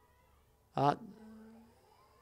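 A man's voice giving one drawn-out hesitant 'uh' about a second in, the tail held on a low steady pitch, over faint background noise.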